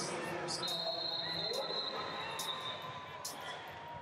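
Wrestling arena ambience: short thuds and slaps of wrestlers' feet and bodies on the mat, several times, over the noise of a large hall with distant voices calling out.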